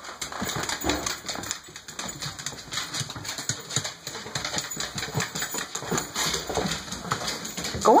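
Scottish terriers' claws clicking quickly and irregularly on a hardwood floor as the dogs trot along.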